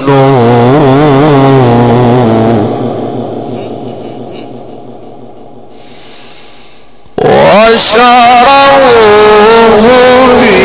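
Male Qur'an reciter chanting in the melismatic mujawwad style, a long ornamented phrase with a wavering pitch ending about two and a half seconds in. A quieter stretch follows, and about seven seconds in the voice comes back suddenly and loud with long held and sliding notes.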